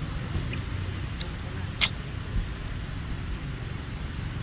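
Steady low outdoor rumble, with a few faint ticks and one sharp click a little under two seconds in.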